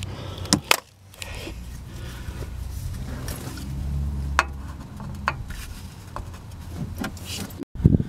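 A few scattered metal clicks and clinks from hand tools and parts being handled under a car while the oil pan is freed and lowered, over a low rumble.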